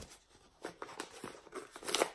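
Brown paper mailer crinkling and crackling as it is pulled at by hand to tear it open, in scattered short bursts, louder near the end. It is tightly sealed and hard to get into.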